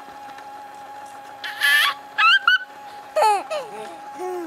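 A toddler girl's excited high-pitched squeals, three short ones in the second half, sliding up and down in pitch, like delighted shrieks of laughter.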